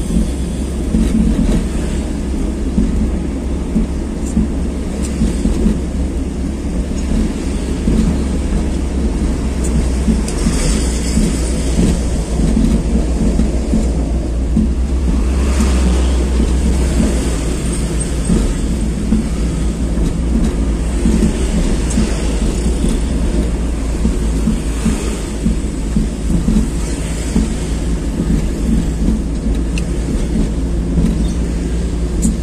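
Steady low rumble of a moving vehicle's engine and road noise while driving down a street, with a few brief louder swells as traffic passes.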